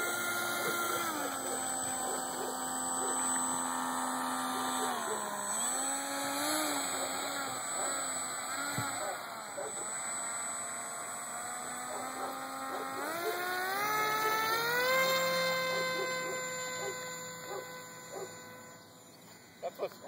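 Electric motor and propeller of a Polaris Ultra RC float plane whining while it taxis on the water. The pitch dips and wavers with the throttle, climbs sharply about two-thirds in as it powers up, holds high, then fades away near the end.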